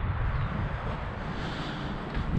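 Strong wind blowing over the microphone: an uneven low rumble with a steady hiss above it.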